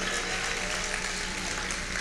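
Congregation applauding: an even spread of clapping with a faint steady low tone beneath.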